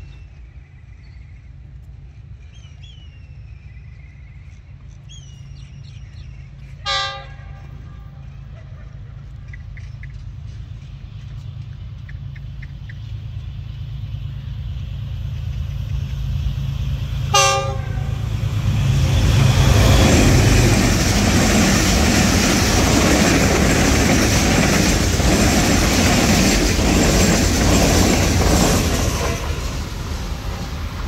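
Diesel-hauled express passenger train approaching at speed, its low rumble building. The horn gives two short blasts, about seven and seventeen seconds in. Then the locomotive and coaches pass close by in a loud, steady rush of wheels on rails, which drops off just before the end.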